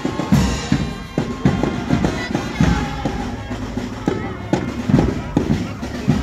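Marching band playing as it passes along the street: drums beating about twice a second under a band melody, with voices from the crowd.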